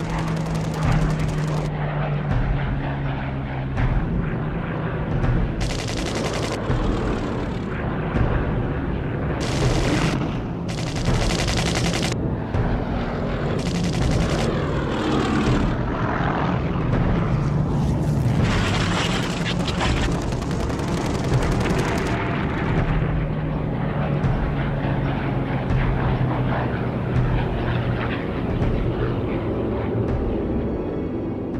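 Engines of WWII propeller-driven fighter and bomber aircraft droning through a dogfight, their pitch shifting as they pass. Several loud bursts of machine-gun fire, each about a second long, come through the middle stretch.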